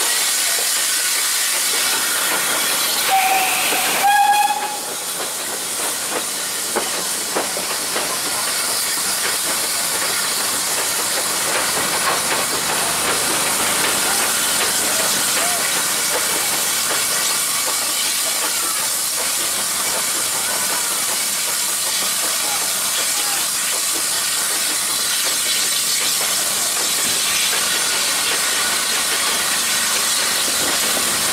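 Steam train on the move: a steady hiss from the running train, broken about three and four seconds in by two short toots on the steam locomotive's whistle, the Polish 'Slask' Class 0-8-0T tank engine hauling the train. A few faint clicks follow.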